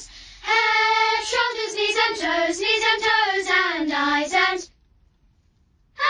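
A child singing a high melody in short phrases. The singing stops about three quarters of the way through, leaving a second of near silence, and starts again at the very end.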